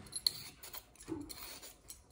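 Hand-held vegetable peeler scraping along a raw carrot in a few short strokes.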